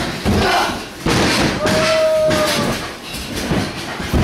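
Thuds of wrestlers moving on the ring mat, mixed with shouting voices and one long held yell about halfway through.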